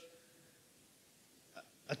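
Near silence: room tone in a pause between a man's spoken phrases, with one brief soft sound about one and a half seconds in, and his voice starting again right at the end.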